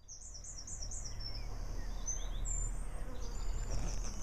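Woodland birdsong: a run of about four quick, high, falling chirps in the first second, and more chirps near the end, over a low rumble on the microphone and a thin, steady high tone.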